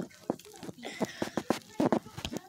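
Close-up eating sounds: biting into and chewing a bagel sandwich with the mouth open, a run of irregular mouth clicks and smacks.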